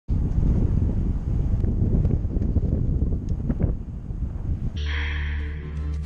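Wind buffeting a bicycle-mounted action camera's microphone while riding, a dense low rumble with a few light ticks. Near the end it cuts abruptly to a steady low droning hum with a hiss above it, an added sound effect.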